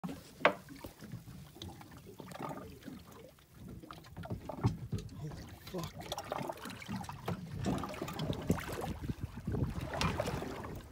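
Water sloshing and splashing against a small boat's hull as a large shark swims at the surface right alongside, with a sharp knock about half a second in.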